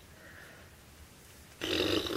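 Quiet room tone, then about one and a half seconds in a young woman lets out a short, loud, rough burp-like noise with her mouth.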